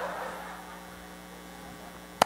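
Steady electrical mains hum from the church sound system, during a pause in the preaching. A brief fading wash of room noise, the tail of laughter, dies away just after the start.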